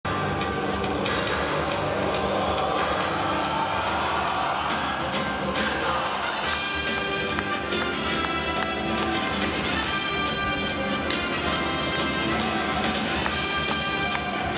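Music over a stadium's loudspeakers with the crowd noise of a football ground beneath it. About six and a half seconds in the music comes through more clearly, with sustained tones and a steady beat.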